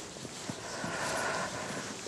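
Footsteps crunching softly on loose sand, with a faint hum that swells and fades in the middle.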